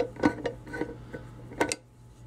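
An 8 mm wrench turning the centrifuge bowl's centre nut counterclockwise to loosen it, metal on metal: about six irregular sharp ticks, the loudest about one and a half seconds in.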